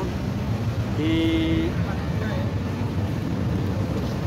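Steady low rumble of street traffic and city hubbub, with one drawn-out spoken syllable about a second in.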